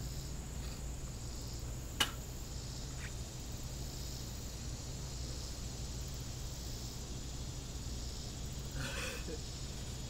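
Steady high chirring of insects in summer vegetation over a low background hum. One sharp click about two seconds in and a fainter one a second later; a brief vocal sound near the end.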